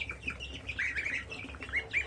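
Goslings and young chicks peeping: short, high peeps, with a quick run of them about a second in and a few more near the end.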